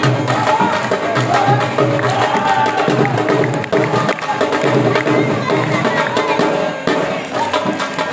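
Live jhumar music: a dhol beating a fast, steady rhythm under a wavering, high melody line.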